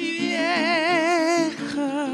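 A man sings a long, wordless held note with wide vibrato over a small acoustic guitar strummed in a steady rhythm. The note breaks off about a second and a half in, and a second vibrato note begins near the end.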